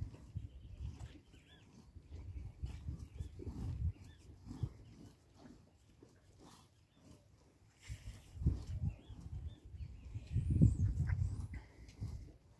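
A cow being milked by hand into a plastic bucket: short, repeated squirts of milk into the foam, along with low puffing sounds from the cattle that are loudest near the end.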